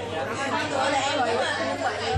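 Chatter: several people talking in a large room, with no distinct sound other than voices.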